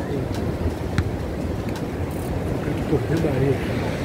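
Busy beach ambience: background chatter of beachgoers over a steady low rumble of wind on the microphone and surf, with a snatch of nearby voices about three seconds in.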